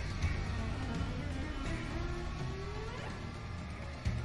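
Soundtrack music from the anime episode, with a steady low rumble beneath it and slowly gliding held tones.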